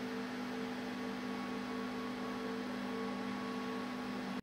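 A steady background hum made of a few held tones over light hiss, unchanging throughout.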